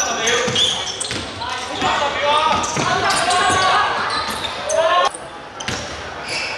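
Basketball game: players and coaches shouting across the court while the ball bounces on the wooden floor. The sound drops abruptly about five seconds in.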